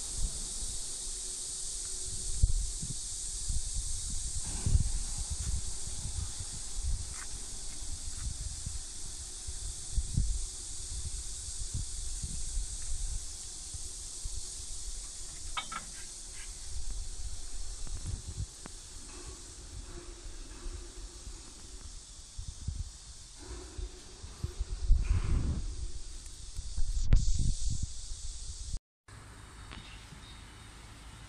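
Steady high hiss of insects in the surrounding trees, with irregular low thumps and rumbles of wind and handling on a handheld microphone, heaviest near the end. The sound cuts out briefly just before the end.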